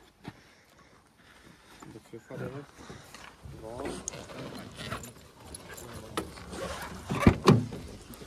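Low voices and handling noise, then two loud knocks close together near the end as the cab door of a Toyota Hilux pickup is opened.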